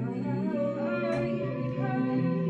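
Layered, sustained vocal humming and singing in harmony, a woman's voice gliding over held drone tones, as in a live looped vocal set.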